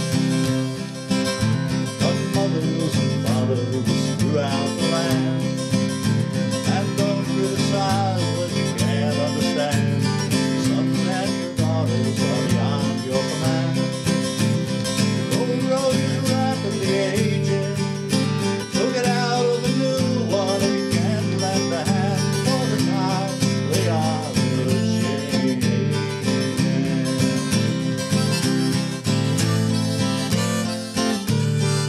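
Instrumental break: an acoustic guitar strummed in a steady rhythm, with a harmonica held in a neck rack playing the melody over it at the start and again near the end.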